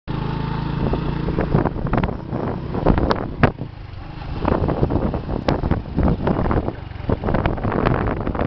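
Motorcycle ride on a rough road: a steady engine note for the first second and a half, then wind on the microphone and many sharp knocks and clatters from the ride, the loudest about three seconds in.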